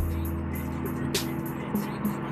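Steady engine and road noise inside a moving car's cabin, with music playing in the background and a brief click about a second in.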